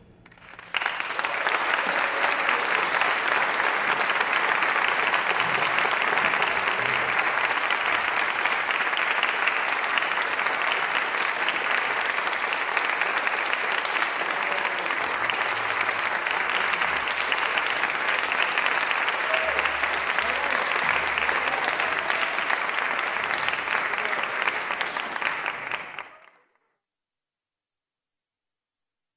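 Audience applauding steadily after a band performance, starting just under a second in and cutting off abruptly near the end.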